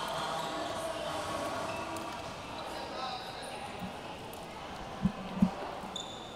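Murmur of an indoor basketball crowd that fades over the first seconds, then two thuds near the end, a third of a second apart: a basketball bounced twice on the court.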